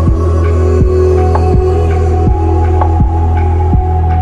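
Slow deep chill electronic music: a heavy sub-bass and a soft kick drum striking about every three-quarters of a second, under held synth notes.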